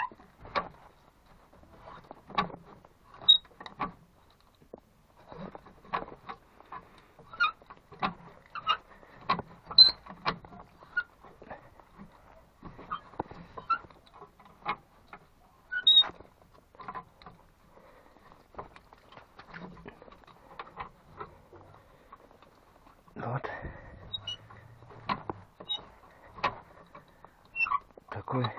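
Homemade chain wrench being worked around a round steel fitting: irregular metallic clicks and clinks from the chain links and the handle, some with a bright ring. A longer, rougher rattling stretch comes about 23 seconds in.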